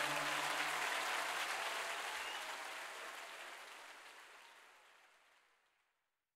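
Choir and audience applauding at the end of a live song, with the last held chord of the music dying away in the first second. The applause fades out gradually to silence.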